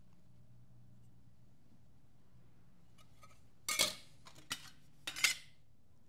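Thin pressed aluminium sheets clinking and clattering as they are handled and laid down on a perforated steel fixture table: a few light clicks, then two louder clatters, one a little past halfway and one near the end, over a faint steady hum.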